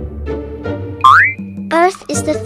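Light background music for children, with a cartoon sound effect about a second in: a quick upward pitch slide that levels off into a briefly held high tone, the loudest sound here. A voice starts near the end.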